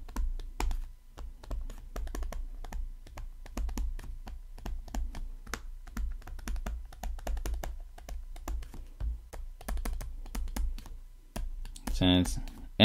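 A stylus clicking and tapping on a tablet surface while handwriting is written: a rapid, irregular run of sharp clicks with soft low thuds beneath them.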